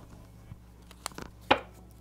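A tarot card deck being picked up and handled on a cloth-covered table: a few light taps and clicks, the sharpest about three-quarters of the way through.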